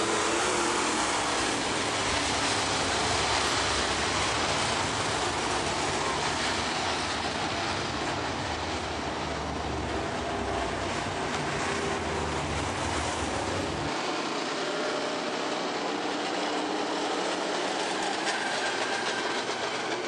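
Steady mechanical rumble of dirt-track modified race cars running slowly under a caution flag, heard from across the track. About two-thirds of the way through, the deepest part of the rumble drops away.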